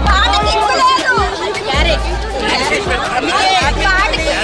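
Loud dance music with a heavy bass beat, with many people's voices chattering and calling out over it.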